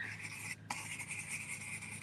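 Stencil brush with orange paint being swirled and dabbed through a stencil, a steady scratchy rubbing of bristles on the stencil and board with a brief pause about half a second in.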